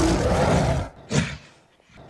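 A deep animal roar sound effect, lasting about a second, followed by two short noisy bursts about a second apart.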